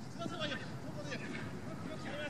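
Several voices shouting and calling across a soccer pitch in short, indistinct bursts: players calling to one another during play.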